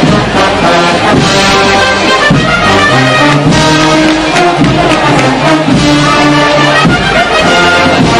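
A brass procession band playing a march, loud and continuous, with trombones and trumpets holding long notes that change every second or so.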